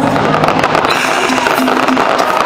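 Aerial fireworks bursting and crackling in a dense, continuous patter, over loud show music.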